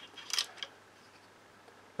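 A brief soft rustle about a third of a second in, then quiet room tone.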